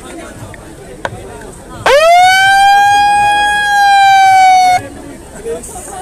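A handheld megaphone's siren sounds once for about three seconds. It sweeps quickly up, holds a steady, slightly falling tone, then cuts off suddenly, over the chatter of a crowd.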